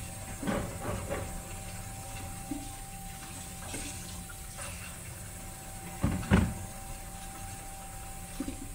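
Water running from a tap, filling sports water bottles, with light knocks as the bottles are handled. A loud, dull thump comes about six seconds in.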